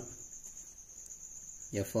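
Faint scratching of a pen writing on paper under a steady high-pitched trill; a man's voice starts near the end.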